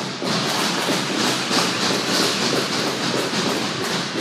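Inline skate wheels rolling hard across a plastic tile rink floor, a steady clattering rumble that starts about a quarter second in and fades near the end.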